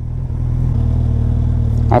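Second-generation Suzuki Hayabusa's inline-four with a Yoshimura R-77 dual exhaust running at low revs, a steady low engine note.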